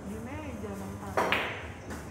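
A person's voice, then a little over a second in a sharp, loud click of billiard balls striking, quickly followed by a second click.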